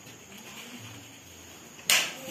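Faint room tone, then one short, loud whoosh near the end as the phone is swung quickly past the microphone.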